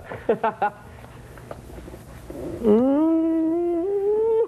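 A few brief spoken fragments, then from about two and a half seconds in a long drawn-out vocal howl that slides up in pitch and holds, stepping a little higher near the end.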